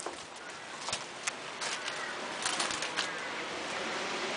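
Footsteps crunching over debris and dry twigs: a scattered series of sharp snaps and crackles, bunched about two-thirds of the way through, over a steady background hiss.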